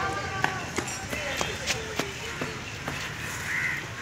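Background children's voices on an open playground, with scattered sharp taps or clicks.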